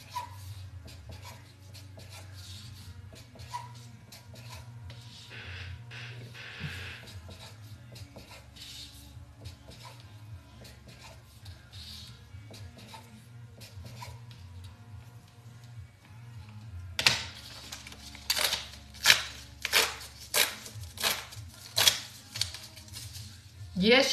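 A felt-tip marker writing numbers on paper raffle tickets, faint scratchy strokes over a steady low hum. About two-thirds of the way in, a run of sharp rips about two a second as the tickets are torn apart along their perforations.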